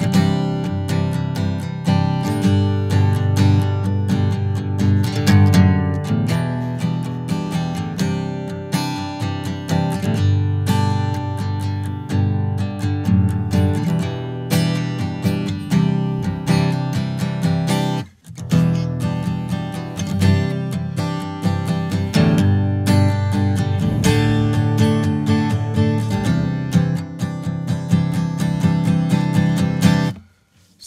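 Steel-string acoustic guitar strummed with a pick, playing a rhythmic chord progression of E minor, C add nine, G and D sus over F sharp with accented strokes. The playing stops briefly about eighteen seconds in, then carries on.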